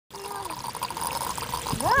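Water steadily running and gurgling out of the ground around a buried pipe fitting: a pressurised underground water leak welling up to the surface. A short exclamation comes near the end.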